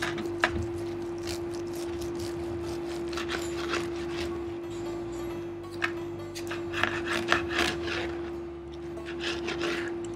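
A knife sawing back and forth through a large roast wagyu rib roast, with scraping and sharp clicks of the knife and fork against the plate, the clicks thickest a few seconds past the middle and again near the end.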